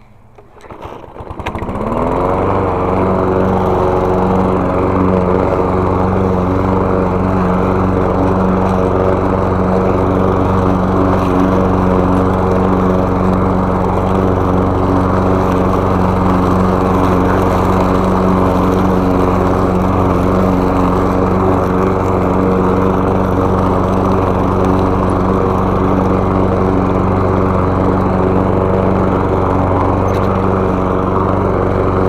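Walk-behind gasoline lawn mower engine starting about a second in, rising quickly in pitch and then running steadily at full speed while the mower is pushed over grass and fallen leaves.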